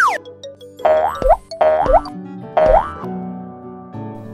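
Cartoon sound effects over light background music: a quick falling whistle at the very start, then three rising springy 'boing' sounds about a second apart.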